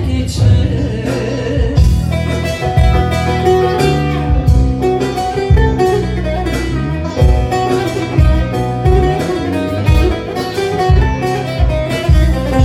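Live Turkish folk band playing an instrumental passage of a song: plucked bağlama and guitar over steady low bass notes, the vocal dropping out after the first moments.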